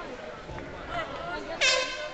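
A short, loud horn blast, about a third of a second long, near the end, signalling the start of the round, over a hall full of crowd chatter.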